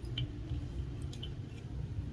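Faint handling sounds of fingers working fly-tying thread at the vise: a few light ticks over a low steady rumble.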